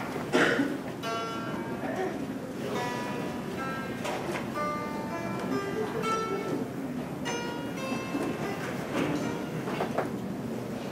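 Dan tranh, the Vietnamese zither, played solo: plucked notes ring out one after another in a slow melody, with a loud attack about half a second in. The piece is in the southern scale.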